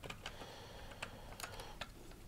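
Faint, irregular light clicks and taps of a printed circuit board being handled and pressed into its plastic surround, about half a dozen in two seconds.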